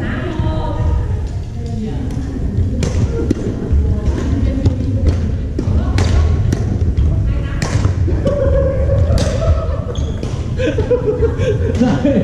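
Badminton rackets striking a shuttlecock during a rally: a series of sharp cracks at irregular spacing, with voices in the background.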